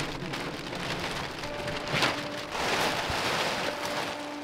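Large plastic tarp rustling and crackling as it is dragged off a metal-tube shelter frame, growing louder in the second half.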